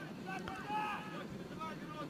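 Faint, distant voices of footballers calling out to each other on the pitch, over a light hiss of wind on the microphone.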